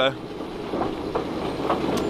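Carrots tumbling off the end of a Grimme elevator into a trailer, a dense rattling patter of many small knocks over the steady running of the elevator machinery.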